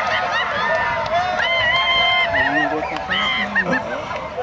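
Several people's voices calling out and chattering at once, with one long high-pitched call in the middle.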